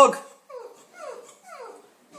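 A dog whimpering: a run of short whines, each falling in pitch, about two a second, fading away.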